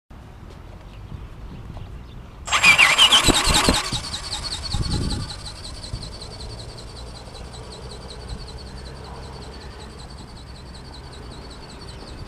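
RC model plane's motor and propeller. They start with a sudden loud whine about two and a half seconds in, with a few low thumps under it, then settle into a steady high whine that slowly fades as the plane flies off.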